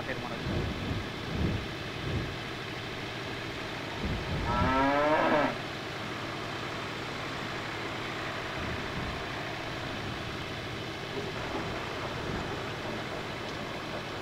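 A cow moos once, one long call about four seconds in, over a steady background hiss of open ground.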